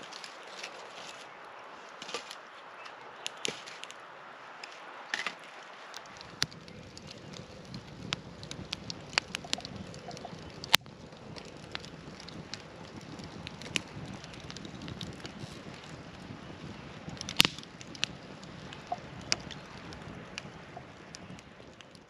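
Campfire crackling: irregular sharp pops and snaps over a steady hiss, with a lower steady noise joining about six seconds in.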